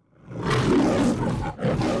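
A big cat roaring twice from silence, two loud roars in quick succession, the second beginning about a second and a half in.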